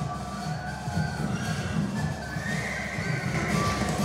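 A horse whinnying in the soundtrack of a projected battle scene, over music and a dense battle din.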